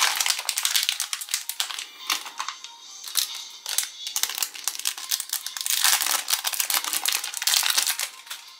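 Plastic and foil wrappers crinkling in the hands as a small sealed blind-bag packet is torn open and the clear plastic bag inside is handled, in dense runs of crackle with short pauses, loudest near the end. Background music plays underneath.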